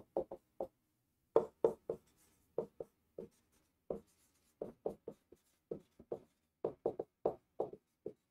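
Dry-erase marker writing on a whiteboard: a run of short, irregular strokes and taps as the letters are written out.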